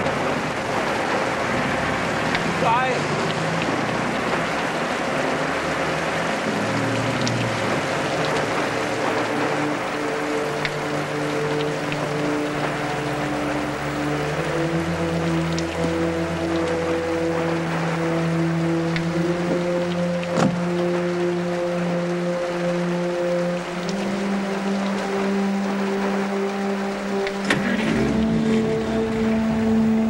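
Steady rain, with a bus engine pulling away in the first few seconds, then a film score of long held notes that swells in from about eight seconds in and steps up in pitch near the end.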